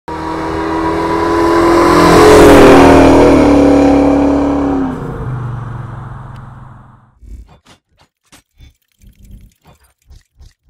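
A car engine approaching and driving past, swelling to a loud peak and dropping in pitch as it goes by, then fading out about seven seconds in. A run of short, sharp clicks and ticks follows.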